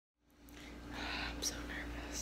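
Faint whispering that fades in from silence at the very start, over a steady hum.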